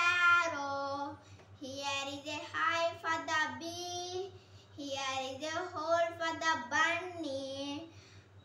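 A young boy singing a children's poem in short melodic phrases, with brief pauses between them.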